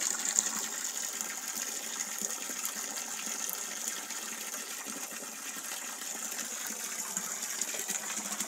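Water running steadily into a rock fish pond as it is refilled, a constant gushing splash.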